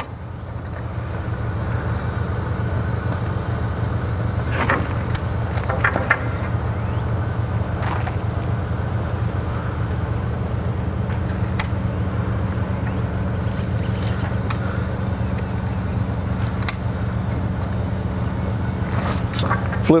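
Steady low hum of an idling truck engine. Over it come a few sharp metallic clicks and clacks as the tensioned strap buckles on a trailer's rear tarp curtain are worked loose.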